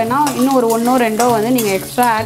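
Garlic cloves frying in oil in a metal kadai, sizzling as a steel spatula stirs them. A loud, smoothly gliding sung melody with low held notes beneath it runs over the frying.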